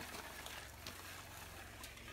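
Faint swish of water in a gold pan being worked in a shallow creek, with a couple of light clicks.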